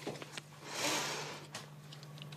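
Quiet kitchen room tone: a low steady hum runs throughout, with a soft swell of hiss-like noise about a second in and a few faint clicks.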